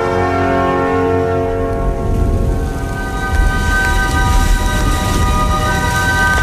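Music fades over the first couple of seconds as heavy rain sets in, with a low rumble of thunder underneath from about two seconds in.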